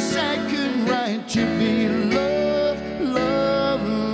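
A man singing a pop ballad, with held and gliding notes, accompanied by a grand piano.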